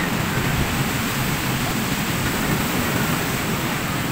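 Steady noise of ocean surf breaking on the beach, mixed with wind.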